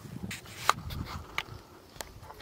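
Footsteps on bare rock: a few scuffs and sharp clicks of shoes on the stone, over low thuds.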